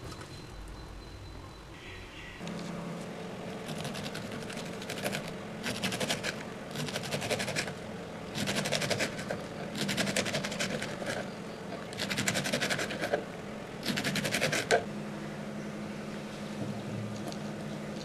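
Kitchen knife chopping okra pods on a wooden board in about seven quick bursts of rapid cuts, each lasting about a second, over a low steady hum.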